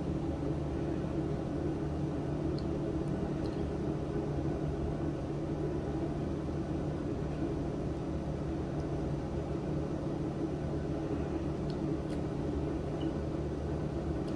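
Steady low hum and hiss of room background noise, with a few faint ticks.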